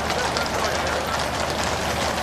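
Hooves of a troop of cavalry horses on a paved road: many irregular clops over a steady rush of outdoor noise.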